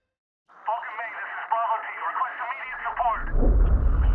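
A voice heard over a radio, thin and band-limited like a transmission, starts about half a second in. A deep rumble swells in underneath it in the last second or so.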